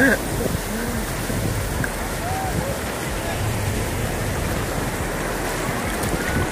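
Steady rush of sea waves and surf with wind blowing across the phone's microphone; a few faint, brief voice sounds from other people in the distance.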